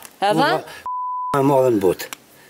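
Speech cut by a censor bleep: about a second in, a steady single-pitched beep lasting about half a second replaces a word, with the voice fully muted beneath it.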